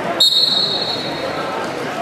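Spectators' voices in a gymnasium during a wrestling bout. About a quarter second in, a sudden high-pitched ringing tone starts and fades away over about a second.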